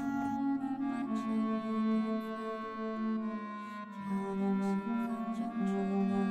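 Background music: a slow melody of long held notes.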